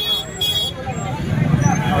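Overlapping chatter of a street crowd over a low, steady engine and traffic rumble. A high steady tone cuts off about half a second in.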